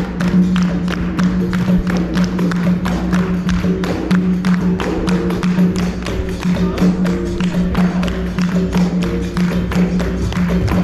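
Capoeira roda music: berimbau, atabaque drum and percussion over steady hand-clapping, keeping an even rhythm.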